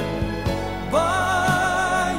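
Recorded early-1980s Christian pop song playing: a band accompaniment with a held, wavering lead note coming in about a second in.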